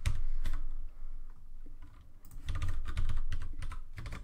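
Typing on a computer keyboard: quick runs of keystrokes with a short lull in the middle, then a dense flurry in the second half.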